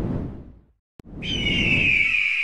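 Logo sound effect: a whoosh that fades away, a brief silence broken by a click, then about a second in a long high eagle-like screech begins, falling slightly in pitch.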